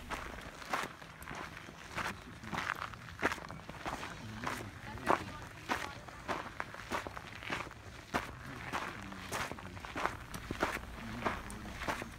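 Footsteps on a rocky dirt trail at a steady walking pace, about two steps a second, with faint voices of other hikers.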